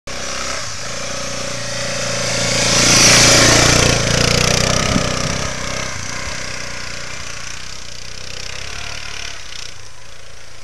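1986 Honda 250 Big Red ATV's single-cylinder four-stroke engine running under throttle on a snowy trail, loudest about three seconds in, then fading to a steady lower drone as it pulls away.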